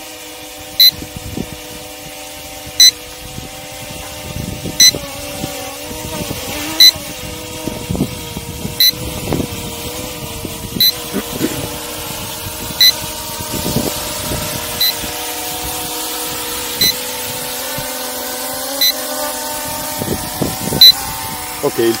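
Dragonfly KK13 quadcopter's brushless motors and propellers humming as it descends on return-to-home and lands automatically, growing louder as it comes down close. A short high-pitched beep repeats about every two seconds.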